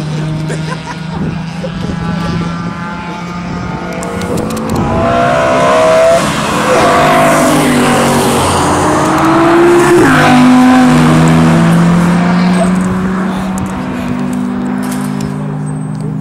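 Sports cars at speed on a race circuit, engines rising in pitch as they accelerate and growing louder as they approach. One passes close about ten seconds in, its pitch dropping as it goes by.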